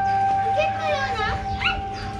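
A dog giving a few short, high-pitched yelping calls over steady background music. The calls are from Labradors at play.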